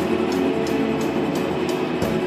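A live rock band playing loud: a distorted electric guitar holds a dense wash of chords over a drum kit, with a cymbal struck about four times a second.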